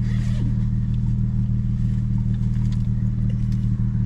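Car engine idling, heard inside the cabin as a steady low drone, with a brief faint rustle near the start.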